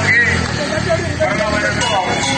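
Men's voices talking loudly over a steady rumble of street traffic.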